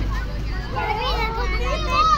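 Several young children's voices talking and calling out over one another while they play, with a steady low rumble underneath.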